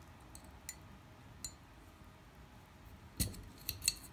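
Small metal clicks of a steel punch working in the back of an Archon Type B pistol slide to push out the spring-loaded extractor parts: a few faint ticks, then a quick cluster of louder clicks near the end as the parts come free.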